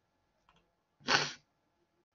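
A single short, sharp burst of breath from a person's throat, about a second in, lasting under half a second.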